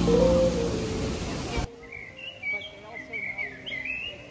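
A music track's held notes fade, then cut off abruptly partway through. What follows is quieter outdoor ambience with birds chirping in short, wavering calls.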